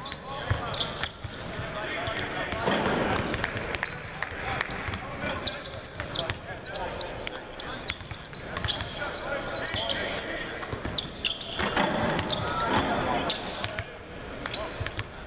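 Several basketballs bouncing on a hardwood court at once, a steady irregular run of overlapping thuds, with people talking in the background.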